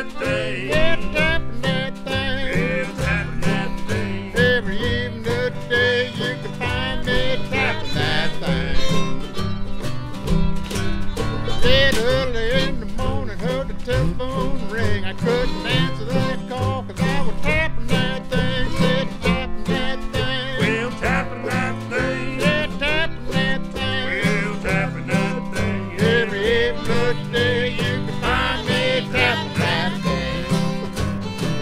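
Old-time string and jug band music with no singing: acoustic guitar, a fiddle-like bowed melody with vibrato, and banjo over a steady bass line.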